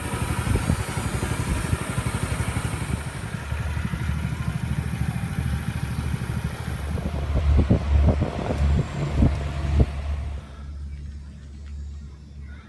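Small engine of a motorised river raft running steadily, with wind rumbling on the microphone. The sound drops away sharply about ten seconds in.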